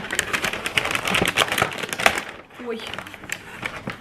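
Brown paper takeaway bag rustling and crinkling as it is handled and opened, a dense crackle for about two seconds that then dies down.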